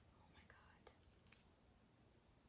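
Near silence with a brief faint whisper about half a second in, followed by two soft clicks.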